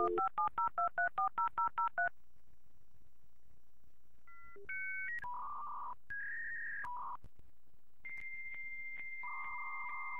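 A rapid string of about a dozen touch-tone telephone dialing beeps over the first two seconds. After a short pause comes a sequence of held electronic two-note tones that step between pitches, like telephone line signals.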